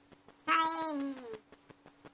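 A single cat meow, about a second long and falling in pitch.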